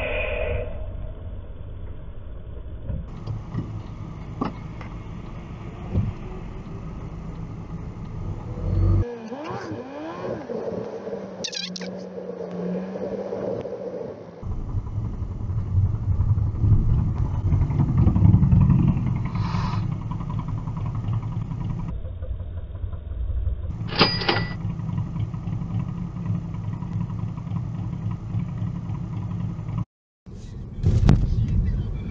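Car driving noise heard inside the cabin from dashcam recordings: a steady low rumble of engine and tyres that changes abruptly several times from one clip to the next. About a third of the way in there is a stretch of rising and falling tones, and a short, sharp high sound comes about four-fifths of the way through.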